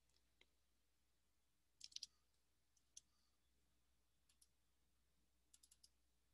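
Faint clicks of a computer mouse and keyboard: a quick burst about two seconds in, a single click, a pair, then a quick run of four near the end, over near silence.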